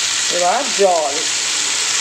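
A pan of curry sizzling on the stove: a steady frying hiss, with a few words of a voice over it about half a second in.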